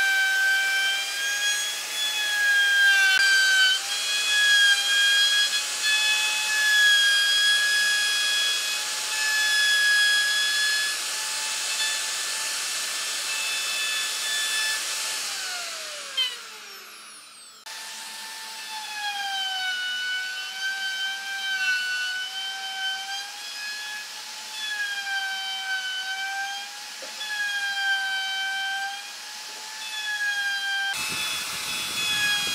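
Dongcheng (DCA) AMR02-12 electric plunge router cutting recesses into a wooden tabletop: a high, steady motor whine that sags slightly in pitch each time the bit bites into the wood. About halfway through it is switched off and its pitch glides down as the motor winds down, then it is running and cutting again.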